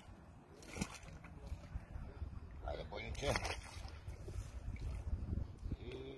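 Water splashing in the shallows as a landed fish is handled by hand, with a sharp splash about a second in, over a low wind rumble on the microphone. Brief indistinct voices come in about three seconds in.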